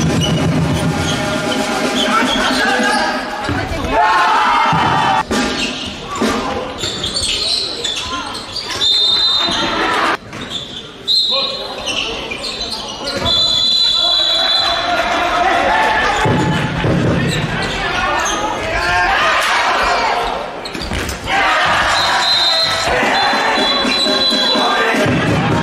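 A handball bouncing and slapping on a sports-hall floor during live play, among players' and spectators' shouts in a large hall.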